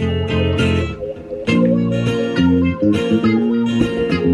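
Instrumental passage of regional Mexican string-band music: acoustic guitars strumming and picking over a bass guitar, with no singing.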